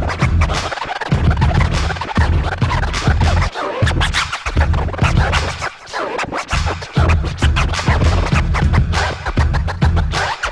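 Turntable scratching: vinyl records worked back and forth by hand on turntables, cut in fast strokes through the mixer, over a heavy bass beat that drops out briefly several times.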